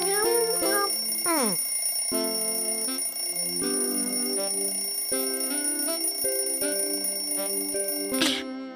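Cartoon alarm clock ringing as a steady high tone over light, bouncy background music, with a quick falling glide about a second and a half in. The alarm fails to wake the sleeper.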